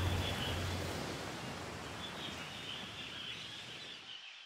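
Outdoor ambient noise with faint, irregular high chirping, fading steadily down. A low hum under it stops about a second in.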